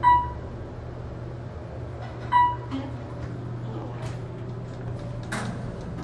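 Elevator car chime dinging once at the start and again about two seconds later, a single clear tone each time, over the steady low hum of an Otis traction elevator car. A sharp clunk near the end as the car doors begin to open.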